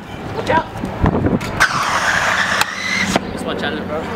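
Stunt scooter wheels rolling on concrete, with several sharp clacks of the scooter striking the ground.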